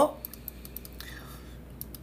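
Faint, scattered clicks of a computer mouse, with a brief soft whisper about a second in.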